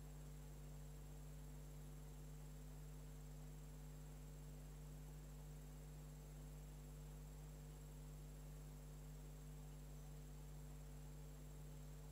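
Near silence: a steady low electrical hum with faint hiss, unchanging throughout.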